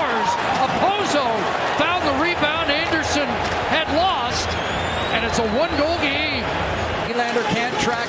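Hockey arena crowd noise, many voices shouting at once, broken by sharp knocks of sticks and puck on the ice and boards.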